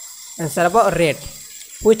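A man's voice: a short utterance about half a second in, then speech beginning near the end, over a faint steady high-pitched whine.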